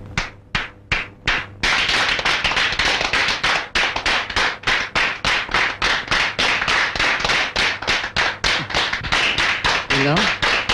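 A few single hand claps, then about a second and a half in, an audience breaks into loud applause, clapping in a fairly even rhythm.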